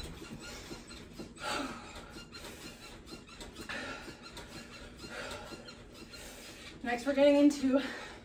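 A woman breathing hard after a high-intensity jumping interval: short, breathy exhales every second or two, with faint squeaky sounds.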